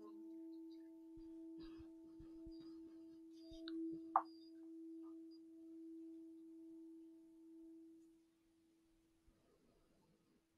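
Handheld clear quartz crystal practitioner bowl tuned to E, ringing on with one steady tone that slowly dies away and is gone about eight seconds in. A few faint knocks and one short, sharp chirp come around two to four seconds in.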